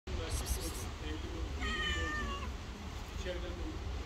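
A cat meowing: one drawn-out, high meow about halfway through, dipping in pitch at its end, and a fainter short call near the end, over a steady low rumble.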